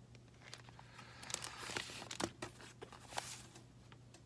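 Crinkling and rustling of an LP jacket's shrink-wrap and paper sleeve as a vinyl record is slid out and handled, with a few small clicks between the rustles.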